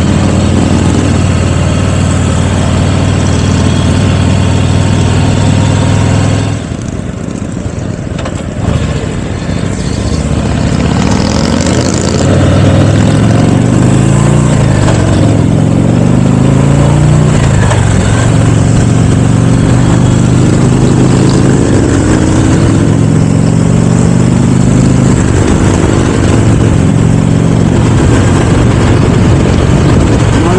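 Can-Am Spyder three-wheeled motorcycle engine running on the move, with wind noise. It runs steadily, goes quieter for a few seconds, then rises and falls in pitch through several gear changes as it accelerates to highway speed and settles into a steady cruise.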